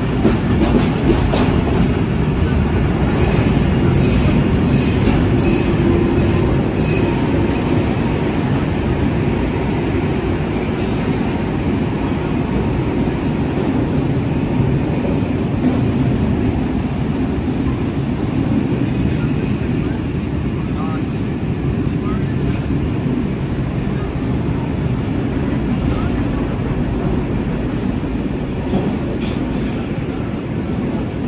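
Steady rumble of a train carriage's wheels on the rails, heard from inside the carriage as it runs through a tunnel.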